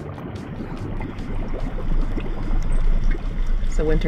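Hot tub water churning and splashing from the jets close to the microphone, with a low rumble growing louder about a second in.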